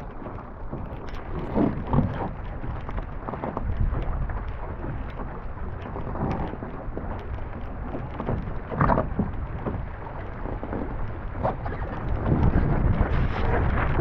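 Wind buffeting the microphone and water rushing and splashing against the hull of a small racing sailboat under way, with scattered knocks and thumps; it grows louder near the end.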